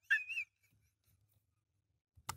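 A man laughing hard in high-pitched, wavering breaths that break off about half a second in, followed by near silence.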